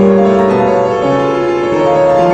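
Piano playing a passage of sustained chords, tuned by the entropy tuning method, which is meant to give a clearer, sharper sound than traditional tuning. New notes are struck at the start and again about one and a half seconds in.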